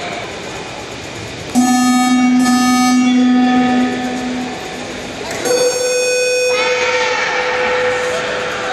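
A horn sounds twice in a sports hall during a taekwondo match. The first blast is lower and lasts about three seconds. The second is higher and shorter, about a second after the first ends.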